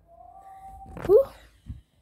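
A boy's breathy, out-of-breath "whew" after dancing: one short vocal cry that swoops up and falls, the loudest thing here, about a second in. A brief low thump of the phone being handled follows near the end.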